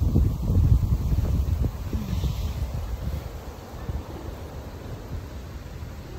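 Wind buffeting a phone microphone outdoors, a gusty low rumble that is strongest in the first couple of seconds and then eases off.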